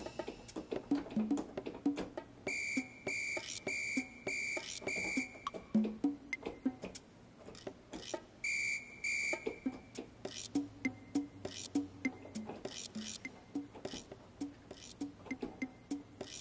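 Yamaha Piaggero NP-V80 keyboard's arpeggiator playing a drum pattern on a percussion voice: a quick run of short drum and percussion hits. A shrill whistle-like tone sounds five times in a row a few seconds in, and twice more near the middle.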